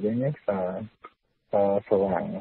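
Speech only: a voice talking, with a pause of about half a second in the middle.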